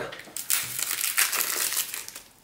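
Cellophane shrink-wrap crinkling and crackling as it is peeled off a deck of cards and crumpled in the hand, a rapid run of crackles from about half a second in until near the end.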